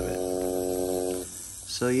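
Electric Shark Innercoil coil tattoo machine, driven by an audio signal from a phone app, buzzing steadily. It cuts off a little past halfway, leaving a brief quiet gap.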